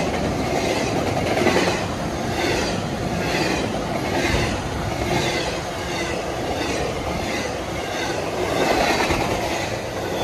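Intermodal freight train of double-stack well cars passing at close range: a steady rumble of steel wheels on rail with a repeating clickety-clack about twice a second.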